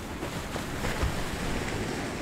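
Ocean surf: waves breaking and washing over rocks, a steady rush of noise that swells over the first second.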